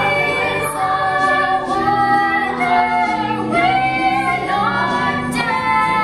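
Voices singing a melody over a steady musical accompaniment in a live stage opera, the notes held and changing pitch without a break.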